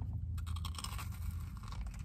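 Crisp crackling crunch of a bite into a deep-fried Korean corn dog coated in crushed Hot Cheetos, starting about a third of a second in and going on as the crust is bitten through and chewed.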